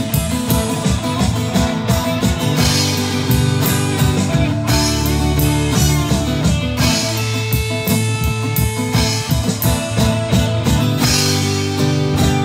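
Live band playing a folk-rock ballad, with strummed acoustic guitar, electric bass, electric guitar and a drum kit keeping a steady beat.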